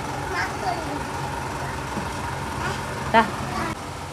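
Ready-mix concrete truck's diesel engine running, a steady low hum.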